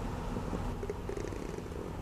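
Room tone in a speech pause: a low, steady rumble with nothing else distinct.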